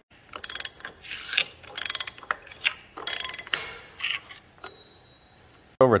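Three-quarter-inch drive ratchet with a large socket clicking in several short, quick bursts on its back-swings, backing off the front crankshaft nut of a 1936 Caterpillar RD-4 engine once it has been broken loose.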